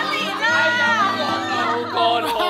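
A group of women squealing, laughing and calling out excitedly, over background music.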